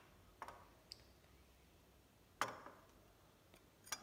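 Near-silent handling sounds: a few faint clicks and one louder knock about two and a half seconds in, as a glass of water with a metal teaspoon in it is moved and set down on a stone countertop.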